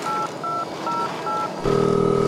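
Phone keypad touch-tone dialing: four short two-note beeps about 0.4 s apart, the number being dialed. Near the end a longer, steady buzzing tone begins as the call goes through.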